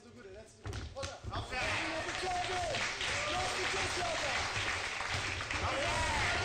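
Arena crowd at a cage fight shouting and cheering, swelling about one and a half seconds in and staying loud, after a couple of thuds near the start.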